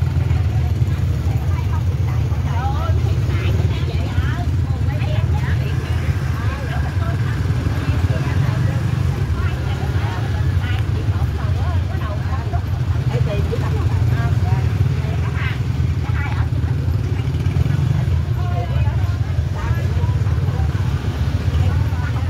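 Small motorbike and scooter engines running at low speed close by, a steady low rumble, mixed with the scattered voices of many people talking.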